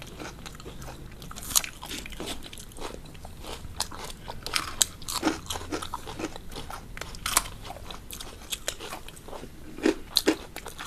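Close-up crunching and chewing of fried onion-ring and cabbage pakoras (batter-fried fritters), with many sharp, irregular crunches as the crisp batter is bitten and chewed.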